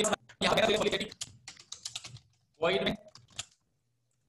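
Typing on a computer keyboard: runs of quick keystroke clicks, with short spoken phrases between them.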